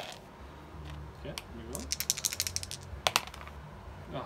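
Six-sided dice clicking on the gaming table and against each other as they are handled and rolled. There is a quick flurry of small clicks about two seconds in and two sharp, louder clicks about three seconds in.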